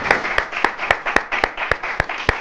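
Hand-clapping: a steady run of sharp claps, about four a second, with softer clapping underneath.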